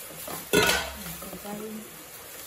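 A single sharp clank of metal cookware about half a second in, aluminium pot and utensil knocking together and ringing briefly.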